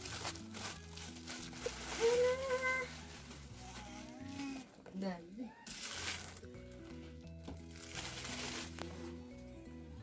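Plastic bubble wrap crinkling and rustling in several bursts as it is pulled off and handled, over steady background music.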